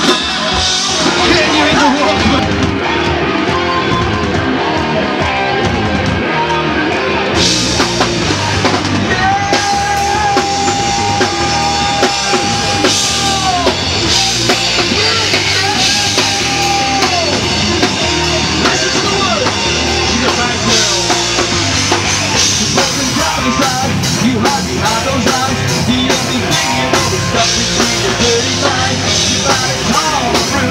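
Heavy rock band playing live, with electric guitar and a drum kit, at a steady loud level; near the middle a single high note is held for about four seconds.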